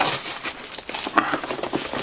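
Packing paper crinkling and rustling as hands dig through a cardboard box, an irregular run of small crackles.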